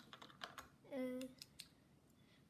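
Small plastic LEGO minifigures clicking lightly as they are picked up and set down one by one on a tabletop, a few scattered faint clicks, with a child's short "uh" about a second in.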